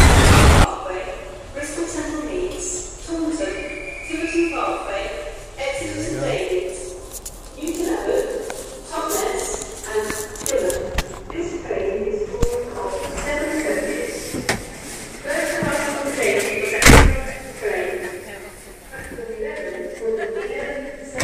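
Passengers talking in a crowded, noisy train carriage, with one loud bang near the end. A loud rushing noise fills the first second and cuts off suddenly.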